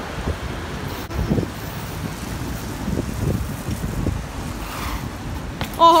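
Wind buffeting the microphone over a steady low rumble of city street noise, with a few faint brief knocks.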